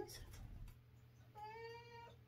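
A domestic cat giving a short, soft meow about one and a half seconds in.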